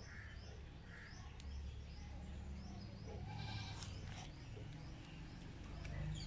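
A goat bleating once, faintly, about halfway through, over a string of short high bird chirps repeating about twice a second.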